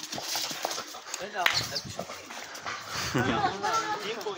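A pit bull whining excitedly during play: a short rising whine about a second and a half in, then a wavering run of whines near the end, over scattered taps and scuffs on the court.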